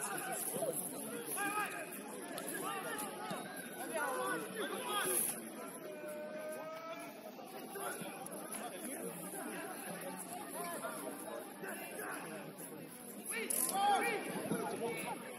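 Indistinct overlapping shouts and chatter of football players and onlookers across an open pitch, with one longer held call about six seconds in.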